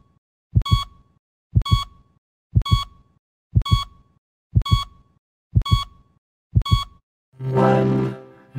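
Heartbeat sound effect: a double thump about once a second, each with a short electronic beep like a heart monitor's. Music begins near the end.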